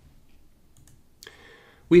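A short pause in a man's talk, close to the microphone: a couple of faint mouth clicks, then a soft in-breath just before he starts speaking again at the end.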